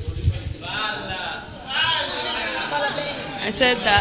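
Indistinct voices talking, with the words not made out; a brief high-pitched voice sound near the end.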